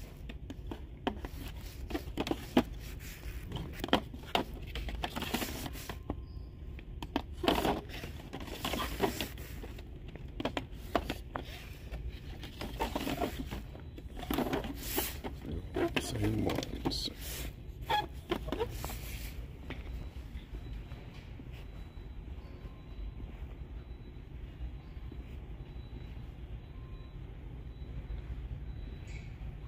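Plastic-and-card blister packs of diecast toy cars being handled, giving a run of crinkles and clicks for most of the first twenty seconds, over a steady low store hum.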